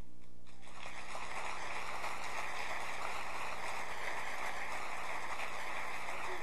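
The tail of a held barbershop-quartet chord dies away. About half a second in, audience applause starts and runs on steadily.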